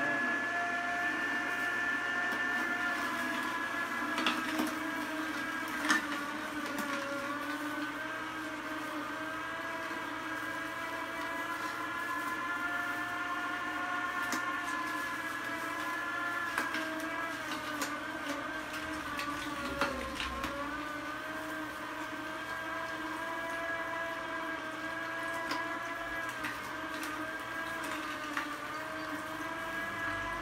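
Vertical slow juicer running with a steady motor whine as it crushes carrot pieces. Its pitch wavers and sags briefly about two-thirds of the way through as it takes the load, with a few sharp cracks from the carrot being broken up.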